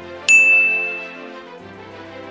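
A single bright bell ding, a notification-bell sound effect, about a third of a second in, ringing out and fading over about a second. Soft background music plays underneath.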